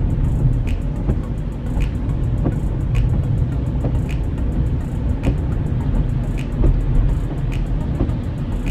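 Road and engine rumble inside a moving car's cabin, a steady low drone.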